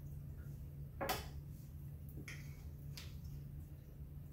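Knife and fork working through a bacon-wrapped sausage roll on a plate: one sharp clink or scrape of cutlery on the plate about a second in, then two fainter ones, over a steady low hum.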